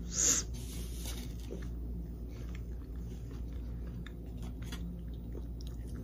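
A person chewing a mouthful of bao bun with pork, with faint small mouth clicks and a short burst of noise just after the start.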